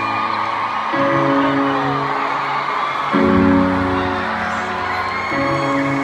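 Live slow ballad accompaniment heard from the audience in an arena: sustained chords held for about two seconds each before changing, with scattered audience whoops over the top.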